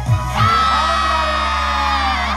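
Yosakoi dance music played loud over a PA: the driving drum beat stops about half a second in, giving way to a sustained bass note and one long held vocal call.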